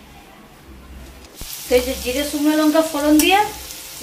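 Onions frying in hot oil in an aluminium kadai: a steady sizzle that starts suddenly about a second and a half in, with a metal spatula stirring. Before it there is only faint room sound.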